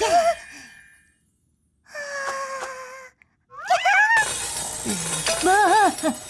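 Cartoon sound effects: a magic poof that fades out, then wordless character vocalizing over the steady gritty hiss of a grindstone grinding metal, which starts about four seconds in.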